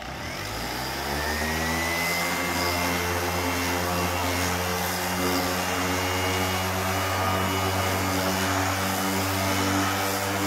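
Erbauer ERO400 400-watt random orbital sander switching on and spinning up over the first second or two, then running steadily at speed setting 3. Its 120-grit pad is sanding paint off a piece of wood.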